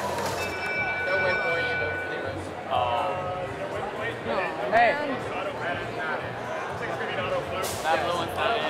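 Electronic field-control tone marking the end of the autonomous period, held steady for about two seconds just after the start. Behind it is the chatter of many voices in a crowded competition hall.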